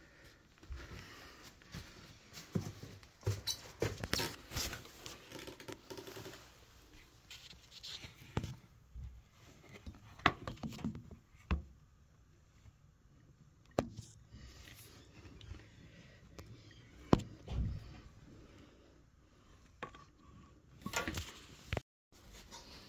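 Intermittent handling noises: scattered knocks, clicks and scrapes with quiet stretches between, two sharper knocks near the middle and later on.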